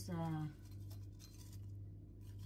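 Fingers picking through frozen blueberries in a small glass bowl: faint scratchy clicks and scrapes of the frozen berries against each other and the glass, over a steady low hum.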